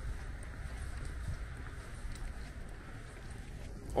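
Quiet city-street background: a steady low rumble of light wind on the microphone and distant road traffic, with no distinct event standing out.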